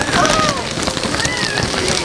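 Dense rustling and crackling noise, like material being brushed and handled, with faint voices behind it.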